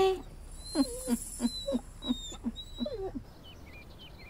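A small dog yelping: a quick run of about eight short calls, each falling in pitch, over a couple of seconds.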